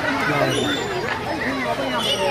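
Several voices talking and chattering at once, none clearly picked out as words.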